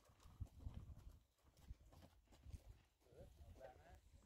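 Near silence, with faint, irregular low knocks and scuffs.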